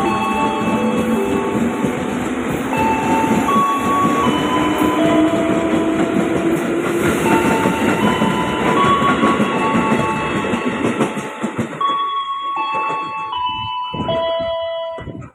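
KRL commuter electric train running past the platform and away, with a steady rumble of wheels and carriages on the rails. The noise fades about twelve seconds in as the last car clears.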